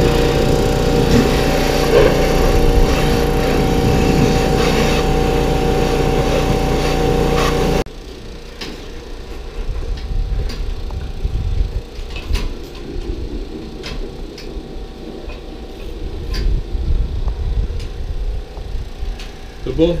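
Pressure washer running steadily and loudly, cut off suddenly about eight seconds in. Then a quieter barn background with scattered sharp knocks and clanks from cows in steel locking head gates.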